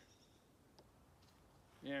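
Quiet background with two faint clicks, about half a second apart, as a balloon target is fixed to a wooden post by hand.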